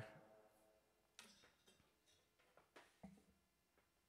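Near silence, with a few faint clicks and knocks from an acoustic guitar being handled and taken off.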